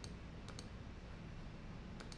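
A few faint clicks over a low steady hum: one at the start, then two in quick succession about half a second in.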